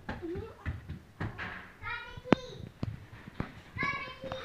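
A toddler's high-pitched voice calling out, once about two seconds in and again near the end, among short sharp slaps of bare feet running on a hardwood floor.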